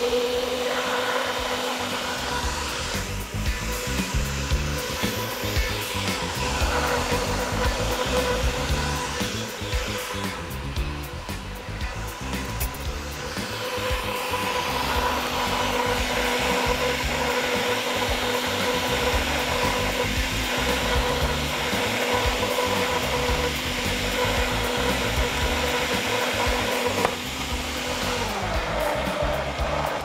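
Countertop blender running steadily at speed with a constant motor whine, blending watermelon chunks, ice and mint leaves into a smoothie.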